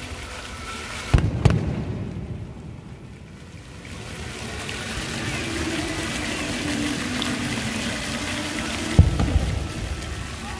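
Water jets of a fountain firing, with sudden loud rushes about a second in, again just after, and near the end, and splashing water between them.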